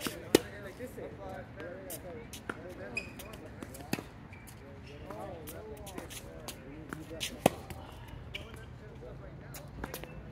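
Tennis balls knocking on a hard court and off strings: a few sharp single knocks, the loudest about a third of a second in and another about seven and a half seconds in, a weaker one near four seconds.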